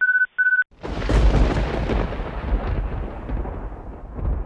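Two short electronic alert beeps at one high pitch, then a clap of thunder about a second in that rumbles on and slowly fades.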